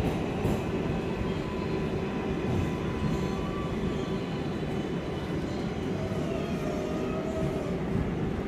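Inside an R188 subway car on the 7 line, heard through the car door: a steady rumble of wheels and running gear, with a faint electric motor whine that falls in pitch as the train slows into the station.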